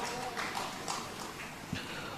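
A quiet pause in amplified speech: faint room sound with a soft click near the end.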